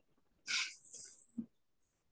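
Near silence on a video-call feed, broken by a short breathy hiss about half a second in and a faint, brief low sound shortly after the middle.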